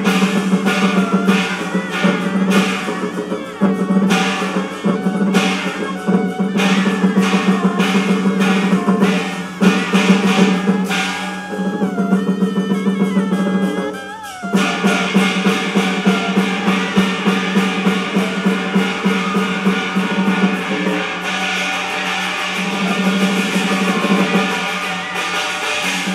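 Live Chinese opera accompaniment: percussion beating steady, rapid strokes over melodic instruments holding a low sustained line. About fourteen seconds in the music drops briefly, then comes back with denser, faster strokes.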